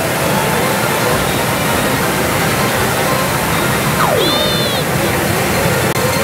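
Loud, steady din of a pachinko parlour: masses of steel balls clattering through the machines, mixed with their electronic sound effects. About four seconds in, a short falling electronic tone and a brief high chirp sound from a machine.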